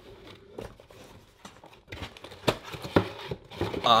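Cardboard box packaging being handled: faint rustling and scraping as the cardboard insert is lifted and shifted, with a few sharp taps and knocks in the second half.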